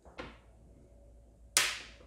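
A faint click, then about one and a half seconds in a single sharp knock that fades within half a second.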